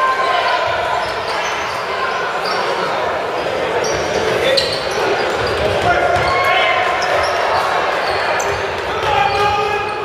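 Basketball dribbled on a hardwood gym floor during live play, under a steady din of player and crowd voices echoing in the gym.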